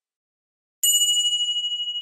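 A single bright bell ding sound effect, like a notification chime, that starts suddenly under a second in and rings on, slowly dying away.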